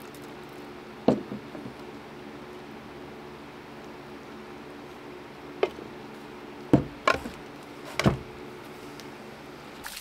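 A few light knocks of a plastic pressure-tank tube and cap being handled and set down on a wooden deck: one about a second in, then several between about five and a half and eight seconds. A faint steady hum sits underneath.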